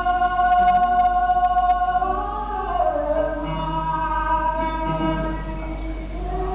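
Flamenco singing with guitar accompaniment: a singer holds one long high note, then bends down through an ornamented, wavering phrase.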